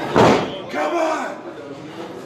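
A single sharp impact of a wrestling blow landing in the ring, followed by a man's voice calling out.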